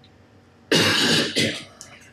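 A woman clearing her throat: a loud rasping burst about two-thirds of a second in, then a shorter second one.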